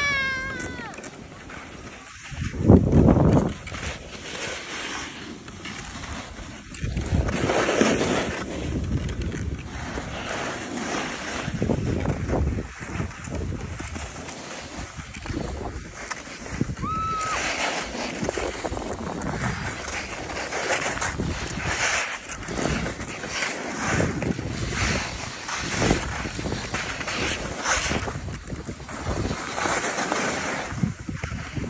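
Wind buffeting the microphone and the hiss and scrape of a board sliding over packed snow while riding downhill, in uneven surges, the strongest gust about three seconds in. A brief high squeal right at the start.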